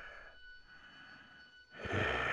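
Breathy exhalations: one hiss of breath fading out at the start, near quiet, then another long breath or sigh beginning near the end.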